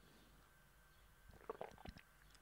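Near silence: room tone, with a few faint short clicks in the second half.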